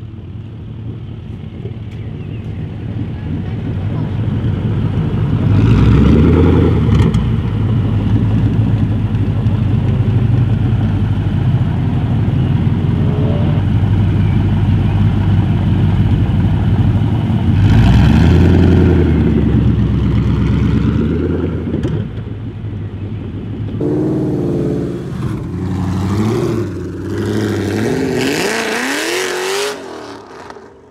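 A first-generation Ford GT's V8 running at a low idle, revved hard about six seconds in and again around eighteen seconds, then blipped several times in quick succession over the last six seconds, the final rev climbing before it cuts off.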